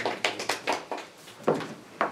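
A small group clapping briefly: scattered, irregular claps that thin out about a second and a half in.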